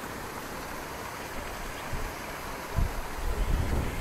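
Wind buffeting the microphone: a steady rush with low, gusty rumbles that grow stronger about three seconds in.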